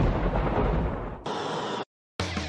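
Thunderclap sound effect: a deep boom that trails off over about a second, followed by a short hiss that cuts off suddenly near the end.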